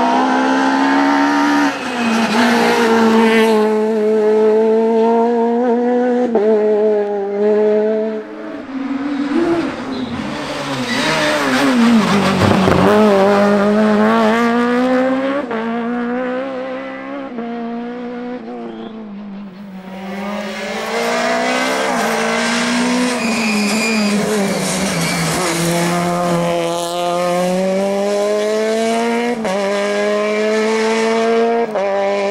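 Rally car engines revving hard and shifting through the gears as cars take the bends of a tarmac stage, the pitch climbing and dropping with each change. About midway, one car passes close by, its note rising and then falling.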